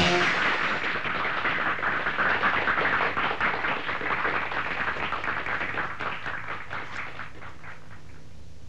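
Audience applauding right after a song ends, the clapping dying away gradually over several seconds.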